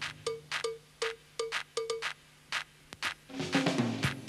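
Drum machine playing a sparse programmed pattern of short, pitched percussion hits in a syncopated rhythm, meant as a click track to play along with. About three seconds in, a live drum kit joins in, playing along with the machine.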